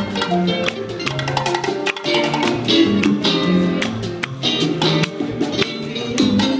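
A live Cuban son montuno conjunto playing at a steady dance tempo: tres, upright bass, congas and hand percussion.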